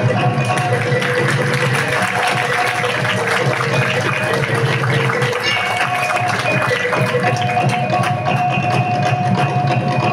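A live ensemble of gongs, drums and struck percussion playing traditional music, with held ringing notes over a steady beat.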